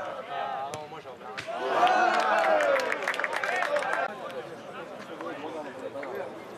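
A small crowd of spectators and players shouting and cheering, swelling loud about a second and a half in and dying back after about four seconds. It is led by a single sharp knock of a football being struck for a penalty kick.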